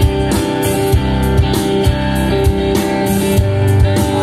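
Rock band playing live: electric guitars, bass guitar and drum kit, with drum hits on a steady beat.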